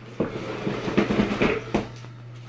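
A chair being moved across a wooden floor: rough scraping and knocking for about a second and a half, starting just after the start.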